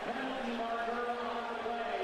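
Game audio from a televised college football broadcast: a haze of stadium background noise with one steady held note that lasts most of the two seconds.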